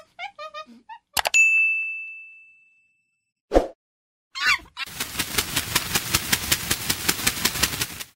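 A click and then a single bell-like ding about a second in, ringing out and fading over about a second and a half: the sound effect of an on-screen subscribe-and-notification-bell animation. Short pitched chirps come before it, and an even, rapidly pulsing rasp fills the last three seconds.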